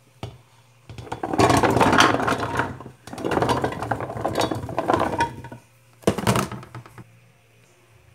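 Chunks of raw pumpkin being tipped into an aluminium pressure cooker, clattering and thudding against the pot in two long pours, with a shorter clatter about six seconds in.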